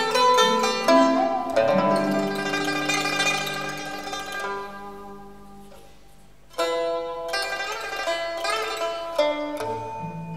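Pipa, the Chinese plucked lute, playing a melody in a solo with Chinese traditional orchestra accompaniment. A busy passage of rapid plucked notes rings on and fades away over a couple of seconds. About six and a half seconds in, a sharp new note starts the next phrase.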